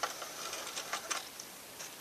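Light, irregular ticks and rustling from hands pulling thread off the spool of a sewing machine.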